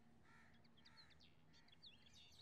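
Very faint birds calling: a few short calls spaced about half a second apart, and small high chirps that grow busier near the end.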